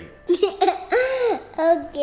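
A young girl laughing in a high voice, a few rising-and-falling giggles.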